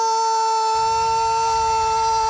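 A ring announcer's voice holding the final syllable of the champion's name as one long, steady-pitched call. A low rumble rises underneath it about three-quarters of a second in.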